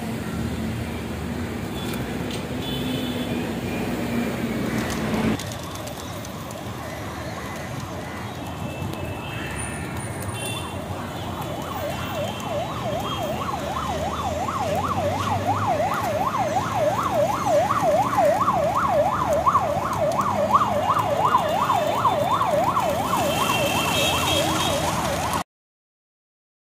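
Siren in a fast yelp, sweeping up and down about three times a second over city street noise. It comes in about halfway through, grows louder, and cuts off suddenly just before the end. Before it there is a low rumble of street traffic.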